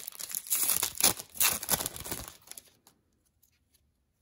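Wrapper of an Upper Deck hockey card pack being torn open and crinkled as the cards are pulled out, a dense rustle that stops about two and a half seconds in.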